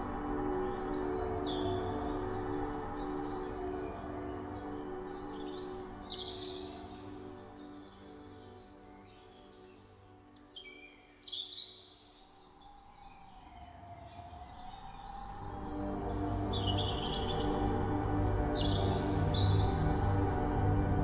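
Calm ambient background music of sustained chords with a slowly wavering tone, and bird chirps over it about five times. The music thins out around the middle and swells back up near the end.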